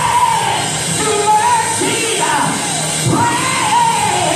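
Gospel singing over a church band: a high voice holds and bends long notes, with shouts from the congregation, in a large reverberant sanctuary.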